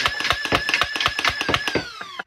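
Solenoid flywheel foam-dart blaster firing full auto: a rapid string of about ten shots a second over the steady whine of the spinning flywheels, which wind down with falling pitch near the end as the firing stops.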